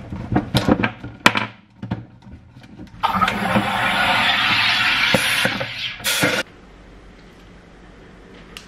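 SodaStream home carbonator: a few clicks as the bottle is fitted, then a steady loud hiss of CO2 being pushed into the bottle for about three seconds, ending in a short, sharp burst as the pressure is vented.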